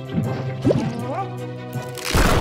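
Cartoon bubble sound effects over background music: a few quick rising bloops, then a loud whooshing burst right at the end as a giant bubble forms.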